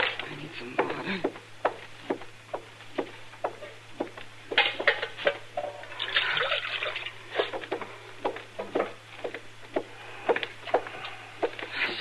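Water being poured and sloshed, a radio-drama sound effect, among scattered small knocks and clinks of a pitcher or basin being handled.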